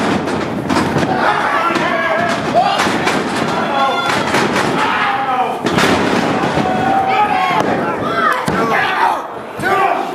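Wrestlers' bodies slamming onto a wrestling ring's canvas mat, with several heavy thuds and the biggest one about halfway through as a wrestler is taken down for a pin. Voices shouting and chattering in a hall run throughout.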